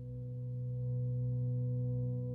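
Instrumental intro of a worship song's backing track: a low sustained drone of a few held tones, fading in and growing louder.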